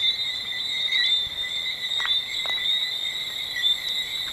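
A steady dusk chorus of high-pitched chirping calls from small animals, running without a break. A couple of faint clicks come about halfway through.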